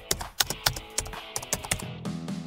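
Computer keyboard typing sound effect: quick, irregular key clicks, several a second, over soft background music.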